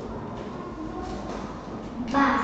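Paper flashcards being shuffled and handled: soft, brief rustles over a steady low room hum.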